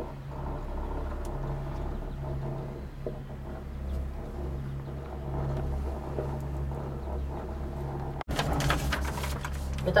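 Steady low hum and rumble inside a moving cable-car cabin, with a short break about eight seconds in.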